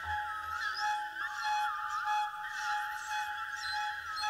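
Solo flute played live over a steady, shimmering layered drone with criss-crossing pitch glides, short held flute notes recurring through it.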